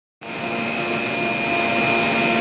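Gondola ropeway station machinery running: a steady mechanical hum with a high, even whine, starting just after the beginning.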